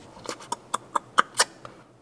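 A quick run of about seven light clicks and taps, roughly four a second, from handling the hinged plywood battery-compartment lid with its metal hinge plates.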